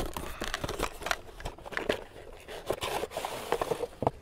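A cardboard toy box being opened by hand, with a run of small clicks, scrapes and rustles as the flaps are pulled and the plastic tray inside crinkles.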